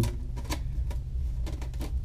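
Expandable aluminum foil dryer duct crinkling as it is handled: an irregular run of small crackles and clicks over a low steady rumble.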